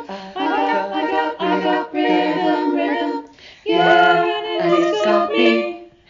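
Close-harmony a cappella singing by several female voices, multi-tracked from separately recorded parts. The phrases break briefly about three seconds in, then the voices come back in, and the sound falls away near the end.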